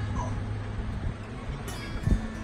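A dog whimpering briefly near the start, over a steady low hum.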